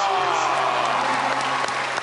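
A studio audience applauding.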